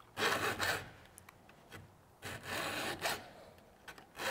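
Two forward strokes of a hand file guide holding a round file and a flat file across a chainsaw chain, sharpening the cutting tooth and lowering the depth gauge in the same pass. Each stroke is a rasping scrape of under a second, about two seconds apart.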